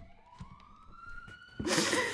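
A faint siren wail rising slowly in pitch. Near the end comes a loud, breathy sob from a crying woman.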